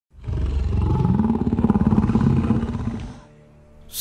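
A deep, rough roar sound effect that rises in pitch over the first second, holds, then fades out about three seconds in.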